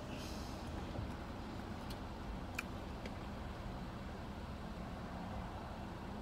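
Steady low rumble of idling car engines, heard from inside a car with its window rolled down, with a couple of faint clicks.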